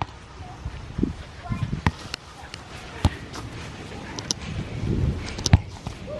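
Soccer ball being kicked about on a grass lawn: dull thuds and footsteps on grass, with a few sharp knocks around two, three and five and a half seconds in.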